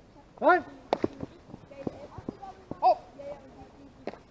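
Players shouting on a baseball field: a loud call about half a second in and another near three seconds. A sharp crack comes just before one second, followed by a few softer knocks.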